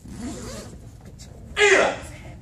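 Taekwondo uniforms swishing as a child and instructor throw a punch, with one short loud shouted call about a second and a half in.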